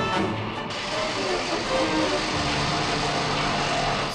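Orchestral score with a steady mechanical noise joining under a second in, a boring-machine sound effect of a borehole being cut into a building, while the music continues underneath.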